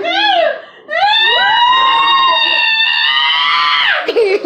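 A woman's high-pitched cry: a short rising-and-falling wail, then one long scream held for about three seconds that drops off at the end.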